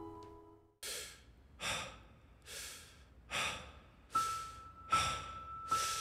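A person breathing rapidly and heavily, about seven airy breaths a little more than a second apart. A steady high tone comes in about four seconds in.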